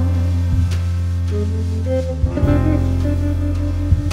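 A live band playing an instrumental stretch of a slow song between sung lines: held electric bass notes under guitars, the chord changing about halfway through, with a single sharp drum hit near the end.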